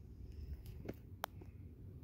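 Quiet handling noise: a low rumble with two faint clicks around the middle, as a plush toy and the phone filming it are moved about.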